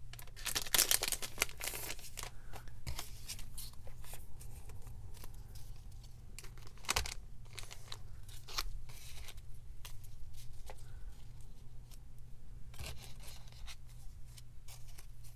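Clear plastic packaging and paper craft pieces rustling and crinkling as they are handled and taken out of their wrapping, loudest in the first two seconds, then scattered crackles, with a steady low hum underneath.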